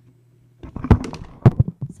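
A faint low hum, then from about half a second in a loud cluster of sudden knocks and crackles very close to the microphone, the two strongest about a second and a second and a half in.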